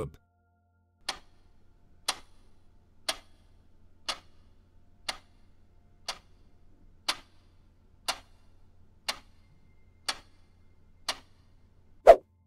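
Quiz countdown-timer clock sound effect ticking once a second, eleven sharp ticks in all, over a faint low hum.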